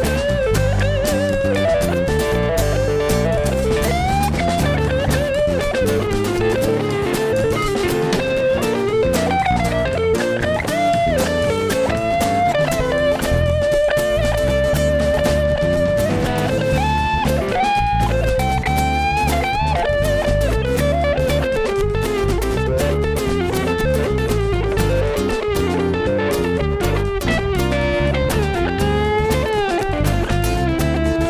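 Electric guitar playing a lead line with string bends over a live band backing, holding one long note about halfway through before bending off into faster phrases.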